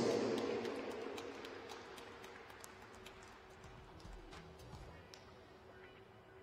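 The public-address announcement's echo dies away in the ice rink over about the first second and a half. Then comes quiet, hollow arena room tone with a faint steady hum and a few scattered faint clicks and thumps.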